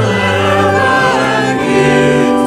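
Church choir singing, the voices holding long chords that change about once a second.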